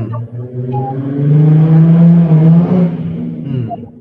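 A motor vehicle's engine running close by, swelling to its loudest about two seconds in and then fading away.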